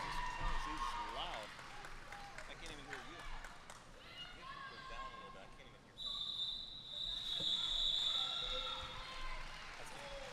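Faint arena crowd chatter with scattered skate knocks, then about six seconds in a referee's whistle sounds a shrill, steady note for about two and a half seconds, signalling the end of the roller derby jam.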